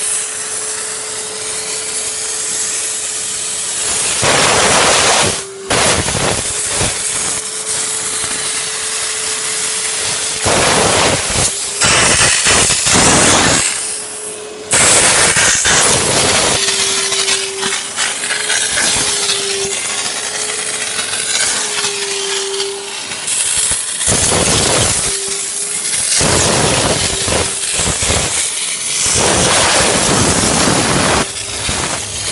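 A vacuum cleaner runs with a steady motor whine while a steam vacuum nozzle, steaming and sucking at once, gives repeated loud hissing bursts of one to two seconds. The whine wavers in pitch briefly midway.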